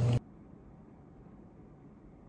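A steady low hum from a running hot tub's pump cuts off abruptly just after the start, leaving only faint steady background noise.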